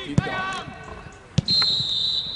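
A football kicked twice, two sharp thuds a little over a second apart, followed by a referee's whistle blown in one long, steady high blast starting near the end.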